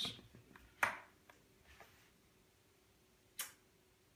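A MacBook Pro's lid being lifted open and the machine handled: a few light clicks and taps, with one click a little under a second in and a sharper, brighter click about three and a half seconds in, over a faint steady hum.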